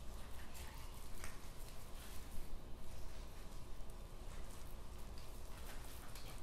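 Faint, irregular small clicks, scrapes and wet squishes of a boning knife cutting raw pork shoulder away from the bone on a plastic cutting board as the meat is pulled back.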